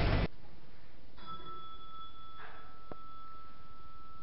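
Background music cutting off abruptly just after the start, then a quiet room with a faint steady high-pitched tone, a brief soft rustle and a single click.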